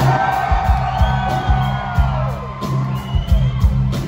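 A live rock band playing, with a steady drum beat and a heavy bass line, and whoops from the audience over it.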